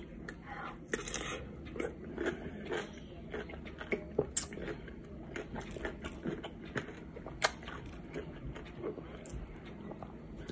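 Close-up biting and chewing of crunchy dill pickles soaked in spicy ranch seasoning: irregular crisp crunches and wet chewing, the sharpest crunches about four and a half and seven and a half seconds in.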